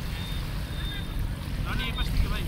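Steady low outdoor rumble by the water, with a man's voice starting near the end.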